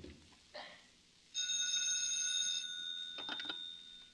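Telephone bell ringing once for about a second and a half, its tone dying away afterwards. Then a few clicks as the receiver is lifted to answer.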